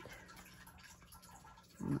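Faint handling noise of a hand brushing over the paper pages of a paperback colouring book, over a low steady room hum.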